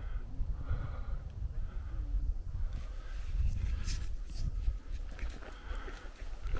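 Low, uneven rumble of wind on the microphone outdoors, with faint distant voices.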